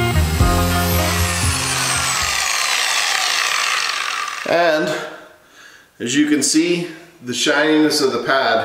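Electric dual-action polisher with a 3-inch pad running on oxidized single-stage paint, then switched off and winding down with a falling whine over about four seconds.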